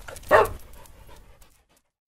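A single dog bark, part of a logo sound effect, about a third of a second in, with a short tail that fades away over the following second.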